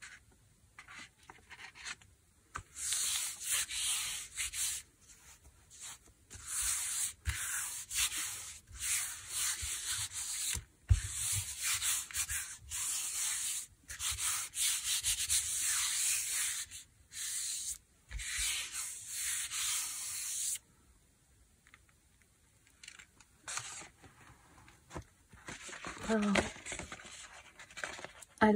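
Hands rubbing a sheet of paper pressed onto a gel printing plate: a long run of separate dry, hissing strokes that burnish the paper so it lifts the paint off the plate. The rubbing stops about two-thirds of the way through, and only a few lighter strokes follow.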